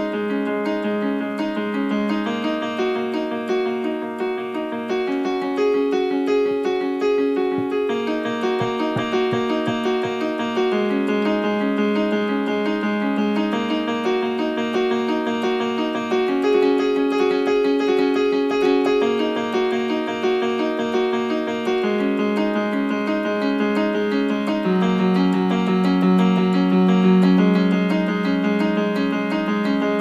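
Piano music: steady repeating broken-chord figures, the chord changing every few seconds.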